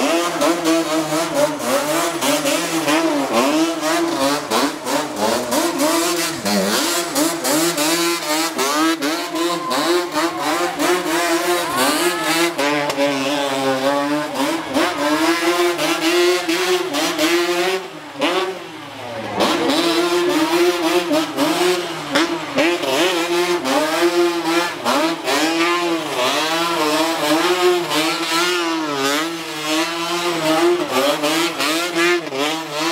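Sport quad bike (ATV) engine revving hard and repeatedly, its pitch rising and falling over and over as the quad is thrown through tight turns on pavement. The revs drop away briefly about two-thirds of the way through, then climb again.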